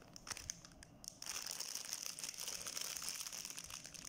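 Thin plastic bread-bun wrapper crinkling as the bun is worked out of it. The crackling starts about a second in and carries on steadily.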